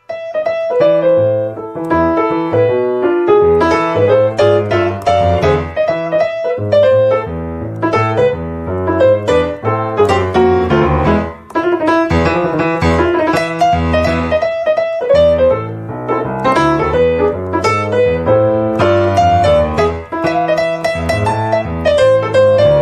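Background piano music: a continuous run of notes over a low bass line, with a brief dip about eleven seconds in.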